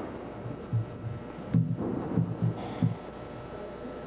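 Bare feet thudding and stamping on a hardwood gym floor during a karate kata: a quick run of five or six low thuds in the middle, over a steady low hum.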